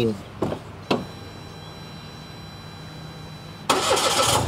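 A car door shuts with a sharp knock about a second in, followed by a low steady hum. Near the end, a car engine starts up loudly.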